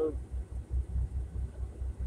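Diesel engine of a truck idling, heard inside its cab as a steady low throb of about six or seven pulses a second.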